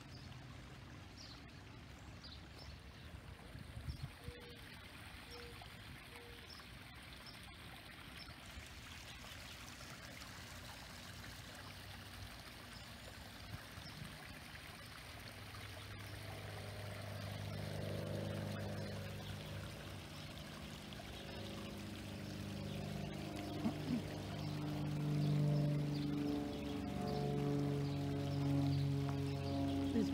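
Small garden waterfall splashing steadily into a pond. From about halfway through, large tubular wind chimes ring in several low overlapping tones that swell louder toward the end, with faint bird chirps over the top.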